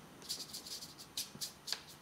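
A watercolour brush being dabbed and wiped on scrap paper to dry it out: a run of quick, faint, scratchy strokes of bristles on paper.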